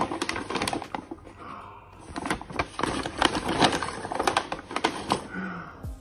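A paper manila envelope being torn open and handled, with a dense, irregular run of crinkling and crackling clicks.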